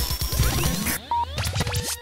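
Electronic station jingle over a logo sting: whooshing pitch sweeps, scratch-like sounds and short beeps over a low beat. It drops out briefly about a second in, then comes back and fades away at the very end.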